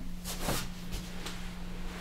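Soft rustling of fabric and sheet as a person shifts and rolls on a cloth-covered treatment table, loudest about half a second in, over a steady low hum.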